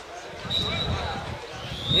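Open-air football pitch ambience: faint distant voices, with a short high steady tone about half a second in and another high tone rising near the end.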